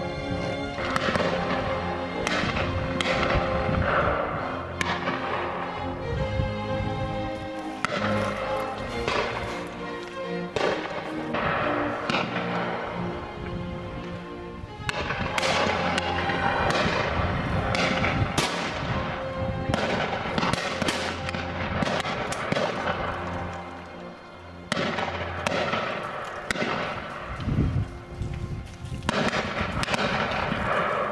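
Shotgun shots on a game shoot, a dozen or so bangs at irregular intervals, each with a short fading echo, heard over orchestral background music.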